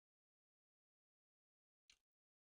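Near silence, with one faint short click just before the end.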